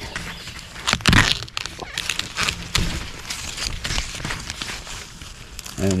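Sweet corn leaves and husks rustling and crackling as a hand grips and handles the stalk, in irregular bursts, the loudest about a second in.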